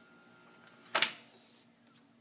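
A single sharp mechanical clunk about a second in, from the Tandberg 3000X reel-to-reel's transport control lever being switched, dying away over about half a second above a faint steady hum.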